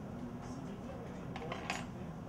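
Small metal kitchen tongs clicking as a plate garnish is placed, then set down on a wooden counter: a few light metallic clinks about one and a half seconds in, over a steady low kitchen hum.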